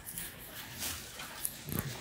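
Cattle snuffling and nosing through feed at a trough, with short breathy puffs, the louder one near the end.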